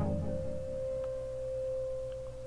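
A steady single pure tone at a mid pitch, held without a break, with a low hum that fades out about half a second in.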